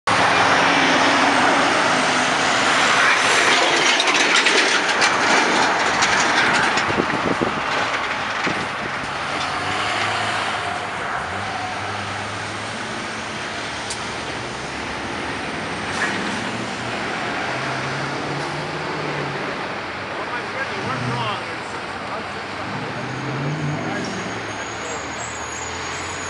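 Heavy road traffic passing close by: cars and diesel semi-truck tractors, loud for the first several seconds and then quieter, with the low hum of truck engines rising and fading as they pass.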